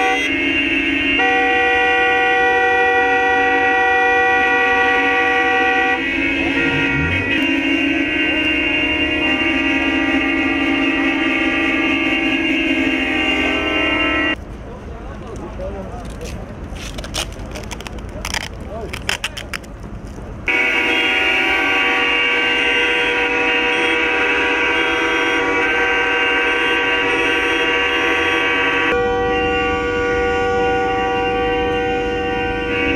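Several car horns honking together in long, held blasts from a protest motorcade. They break off about halfway for a few seconds of quieter street noise with scattered clicks, then resume.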